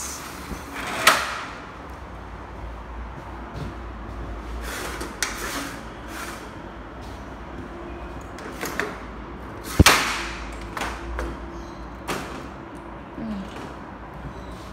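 Sliding window panes and window grilles being slid and shut by hand: a run of knocks and sliding scrapes, with two sharp bangs, one about a second in and the loudest about ten seconds in.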